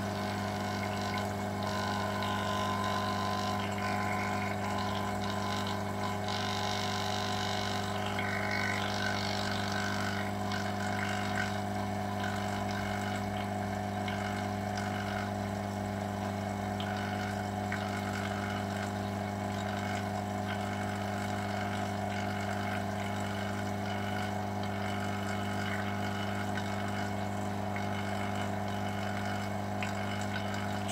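Electric vacuum pump running with a steady, even hum, drawing down the pressure in a vacuum chamber.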